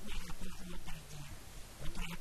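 Speech only: an elderly man's voice talking into a handheld microphone, in short phrases with brief pauses.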